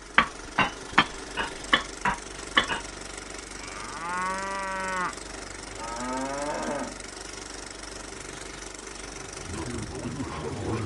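A cow mooing twice, first a long steady moo, then a shorter one that bends in pitch. In the first three seconds comes a run of about eight sharp knocks.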